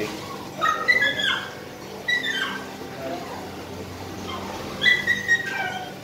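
An animal's high-pitched whining cries: a few short, falling calls, about a second in, two seconds in and again near the end.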